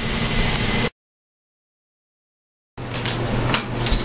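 Steady background hum and hiss, cut off about a second in by roughly two seconds of dead silence at an edit, then resuming as a steady low hum with a thin high whine and a few faint clicks.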